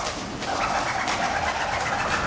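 Vocal performers making a pigeon-like cooing sound in a contemporary concert piece. It begins about half a second in and is held as a wavering, hollow coo.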